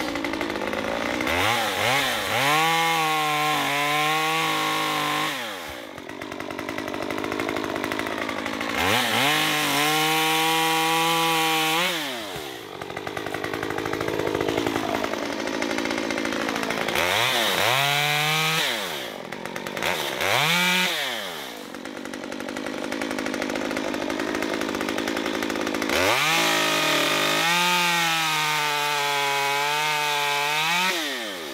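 Stihl MS 194T top-handle chainsaw, a small two-stroke, cutting tree limbs. Five times it revs up to full throttle, holds for a few seconds and drops back to idle. The saw is brand new, on its first cuts.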